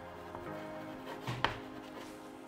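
Chalk tapping and scraping on a chalkboard as words are written, with a sharp tap about one and a half seconds in. Soft background music with held tones plays underneath.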